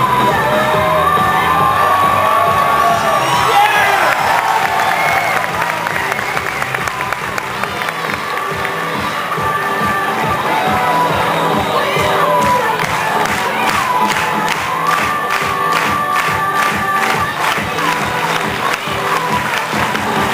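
Audience cheering and shouting over loud performance music, with a steady beat that grows sharper in the second half.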